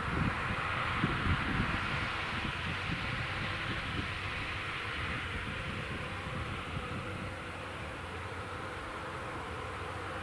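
Fendt 936 tractor and CLAAS Quadrant 5300 big square baler running steadily while baling straw, a continuous drone. It grows slightly fainter in the second half as the rig moves away.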